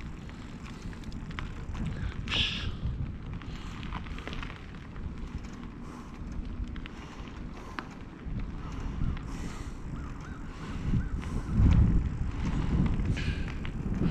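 Wind buffeting the microphone in uneven gusts, with a low rumble that swells about three-quarters of the way through.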